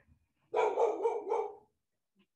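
A dog barking: a quick run of a few barks lasting about a second.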